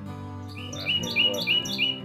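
A bird calling, a quick run of about five loud, sharp chirps in a row, over acoustic guitar music.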